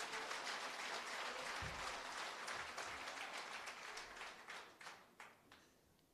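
Audience applause in a hall, thinning to a few scattered claps and dying out near the end.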